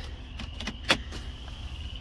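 A sharp click from a push button on a pickup truck's dashboard switch panel being pressed, about a second in, with a few lighter clicks around it. Underneath runs the low, steady rumble of the idling truck heard inside the cab.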